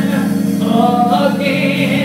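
Gospel music: held organ chords with a voice singing over them, the melody gliding between notes.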